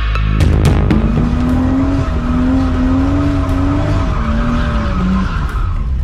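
Nissan Cefiro drift car held at high revs while sliding, its engine note wavering with the throttle over loud tyre squeal, heard from inside the cabin. The revs step down about four seconds in, and the engine note fades out a little after five seconds.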